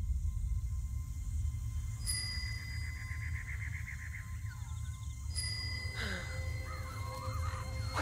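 Film-trailer sound design: a steady low drone under high ringing tones that come in suddenly about two seconds in and again past the five-second mark. Over it come a fast bird-like trill and then short warbling calls, as of forest birds.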